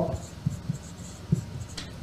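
Felt-tip marker writing on a whiteboard: a series of short scratchy strokes with faint squeaks as a number and a word are drawn.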